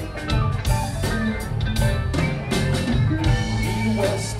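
Live rock band playing an instrumental stretch with electric guitars, bass, keyboards and drum kit, without vocals.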